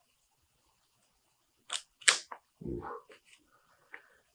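Thick omnibus's glossy paper page being turned carefully, giving two brief paper crackles about two seconds in. The pages tend to stick together, and peeling them apart makes a cracking sound.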